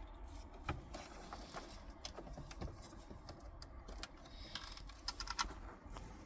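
Small plastic clicks and rattles of wiring plugs and cables being handled and pushed into the back of a car stereo head unit, with a quick run of clicks near the end.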